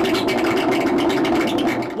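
Harsh noise music from a live performance: a loud, dense wall of crackling, scraping amplified noise over a steady low drone.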